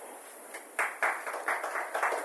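Audience clapping, starting about a second in as a quick irregular patter of hand claps, applause for a poem just recited. It is heard faintly through the console feed of the stage microphone.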